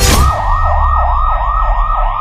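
A police-style yelp siren sound effect, its pitch sweeping rapidly up and down about four times a second. It opens with a sudden hit and a deep rumble underneath.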